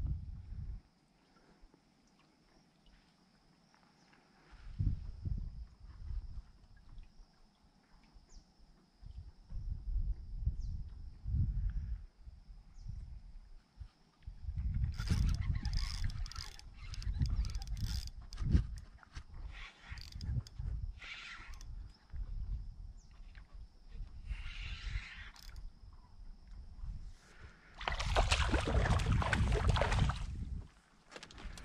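Irregular low rumbles of wind buffeting the microphone, with knocks of handling, under a faint steady high-pitched tone that stops near the end. A louder rush of noise comes about two seconds before the end.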